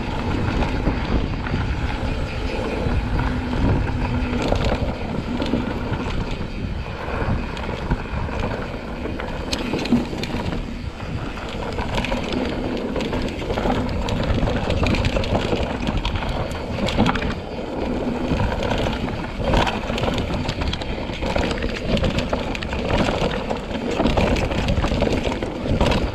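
Mountain bike descending a dry dirt and rock trail at speed: wind buffeting the action camera's microphone, tyres rolling over loose dirt, and the bike knocking and rattling many times over bumps.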